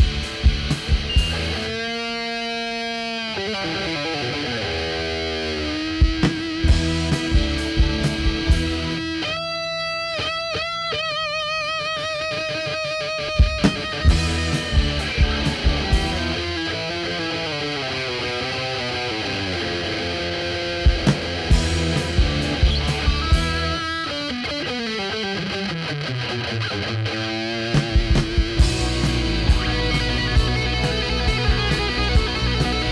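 Instrumental break of a rock song: a lead electric guitar plays gliding, bending notes over bass and drums. The band drops out briefly twice, leaving the lead line alone.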